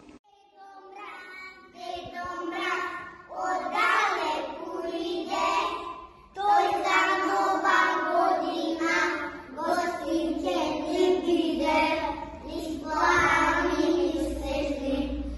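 A small group of young children singing a song together in unison, in phrases with a short break about a second in and another near the middle.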